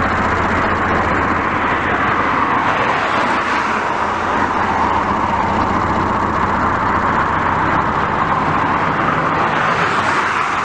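Road traffic: cars driving along a street, a steady wash of tyre and engine noise.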